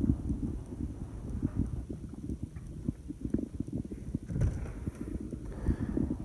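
Footsteps and handling noise from a hand-held camera while walking, heard as an irregular run of low thumps and rumbles with small clicks, a little heavier about four and a half seconds in.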